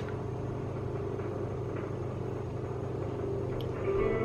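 A steady low background hum with a faint thin high tone above it and nothing else prominent.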